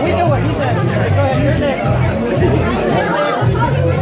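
Several voices talking over each other, with music and its bass notes playing underneath.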